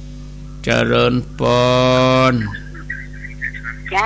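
A man's voice speaking a short greeting, its last syllable held long and even, over a steady low electrical hum; faint broken voice fragments follow near the end.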